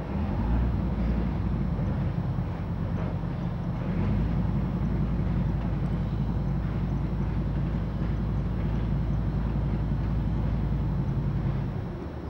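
Transporter bridge gondola in motion, its drive machinery and running gear giving a steady low mechanical hum with a rumble beneath.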